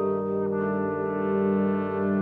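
A trombone choir of tenor and bass trombones playing slow, sustained chords. About half a second in, the upper voices move to a new chord while the low notes hold.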